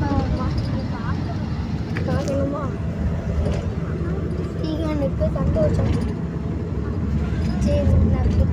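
A bus running on the road, heard from inside the cabin as a steady low rumble of engine and road noise, with people's voices talking over it.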